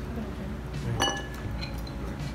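A metal spoon clinks sharply against a soup bowl about a second in, with a fainter clink near the end.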